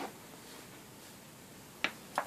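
Quiet room with a soft rustle at the start and one sharp click near the end.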